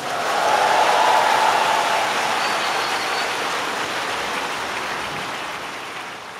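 Audience applauding at the end of a choir song, swelling in the first second and then slowly dying away.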